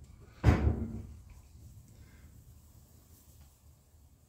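A single dull knock about half a second in, handling noise as the pistol and trigger gauge are set in place against the wooden bench, then a low rumble.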